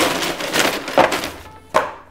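A paper takeaway bag rustling and crinkling as cardboard food boxes are pulled out of it and set down on a table, with two light knocks about a second in and near the end.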